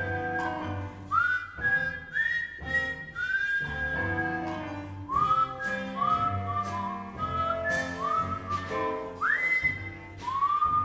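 Jazz dance music from the show's band: a high lead melody whose notes scoop up into pitch, over bass notes and a drum beat with cymbal strikes.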